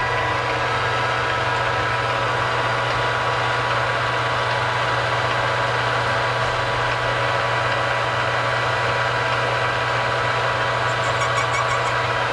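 Manual lathe running steadily with its chuck spinning, a constant motor and gear hum made of several steady tones.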